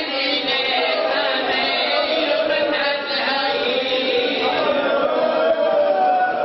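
Several men's voices chanting together without pause, a group mourning chant.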